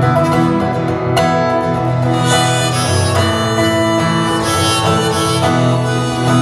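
Acoustic guitar strummed in a blues rhythm, joined about two seconds in by a harmonica played from a neck rack, holding long notes over the strumming.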